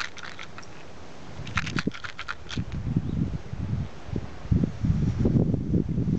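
A few light clicks and rattles in the first half, then uneven low buffeting of wind on the camera microphone.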